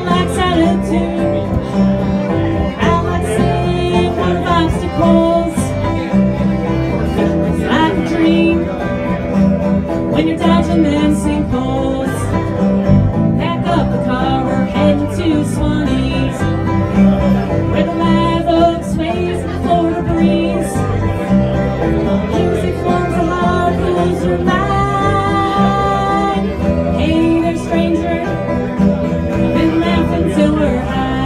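Live bluegrass band playing: banjo, acoustic guitar, electric bass guitar and fiddle together at a steady tempo.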